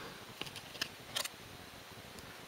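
Trading cards handled and flipped through by hand: three short, light clicks of card stock sliding against card, a few tenths of a second apart, in the first part.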